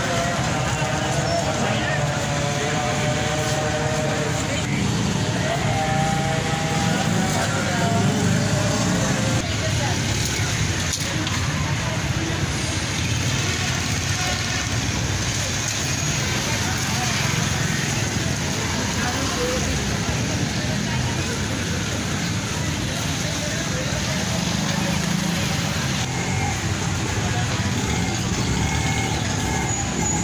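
Potato fries deep-frying in steel pots of hot oil, a steady sizzle, mixed with street traffic and people talking.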